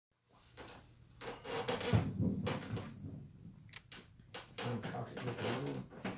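A run of irregular knocks, clunks and rustles from objects being handled and moved, the loudest a thump about two seconds in. Low voices start talking about two-thirds of the way through.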